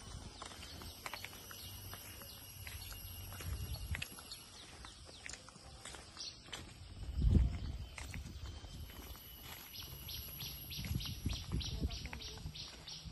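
Footsteps of several people walking on a dry, leaf-strewn dirt path, coming as a quick run of short regular steps near the end, over a low rumble, with one louder thump about seven seconds in.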